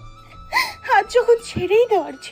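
A woman crying: a sharp breath in about half a second in, then wavering sobs, over soft background music.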